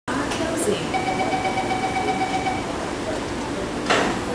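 Interior of an SMRT C751B train standing at a platform with its doors open: over voices and the car's steady equipment hum, a steady door-closing warning tone sounds for about a second and a half, and a sharp knock comes near the end as the doors start to close.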